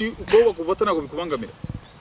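A flying insect buzzing close to the microphone, its wavering drone stopping about a second and a half in, mixed with a woman's voice.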